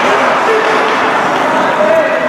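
Hockey rink crowd noise: a loud, even din of spectators' voices and shouting in the arena, with a couple of drawn-out calls standing out, one about a quarter of the way in and another near the end.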